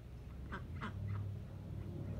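Three short animal calls in quick succession, over a steady low hum.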